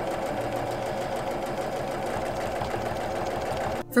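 Sewing machine stitching a seam at a steady, fast pace. It stops abruptly near the end.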